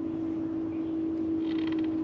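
Electric trolling motor running with a steady hum while the boat is held and nudged over a fish. A brief faint crackle comes about one and a half seconds in.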